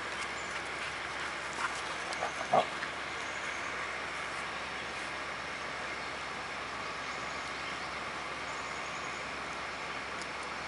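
A dog gives a short, sharp yip about two and a half seconds in, after a couple of fainter short sounds, over a steady background hiss.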